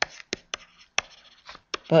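A stylus writing by hand on a pen tablet: light scratching with about five sharp taps as the pen tip strikes the surface.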